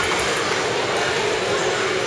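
Steady, echoing din of an indoor swimming pool hall: splashing water and voices blended into one continuous noise.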